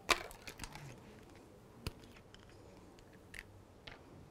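Scattered light clicks and taps of small craft containers and a bottle being handled and set down on a wooden tabletop. The sharpest click comes right at the start and another about two seconds in.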